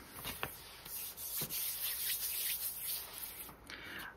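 Hands rubbing and smoothing a folded sheet-music paper envelope to press its freshly glued edges down: a soft, steady paper rustle with a few light taps.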